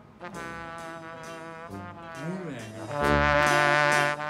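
Comic background music with brass-like held notes, a sliding pitch bend a little past two seconds in, and a loud held note over the last second.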